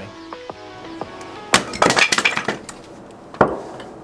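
An axe splitting firewood on a chopping block: a sharp crack about a second and a half in, a few clattering knocks of split wood on concrete just after, and a second sharp strike near the end.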